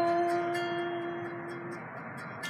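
A man's sung voice holding one long steady note on the last syllable of a phrase. It fades and stops about three-quarters of the way through, leaving faint backing music with light ticking.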